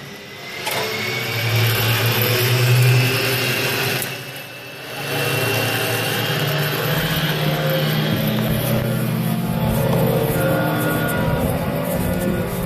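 Zip-line cable and trolleys running with a steady hum made of several held tones that shift in pitch, with a brief dip in level about four seconds in.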